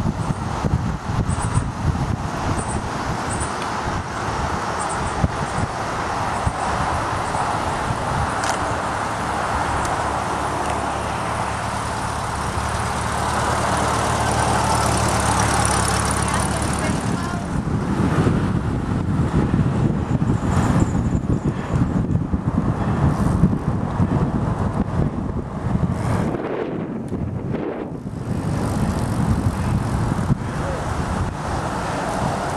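Road traffic noise and wind rushing over the microphone of a moving bicycle. A steady vehicle hum in the first half gives way to heavier, gusty wind rumble from about seventeen seconds in.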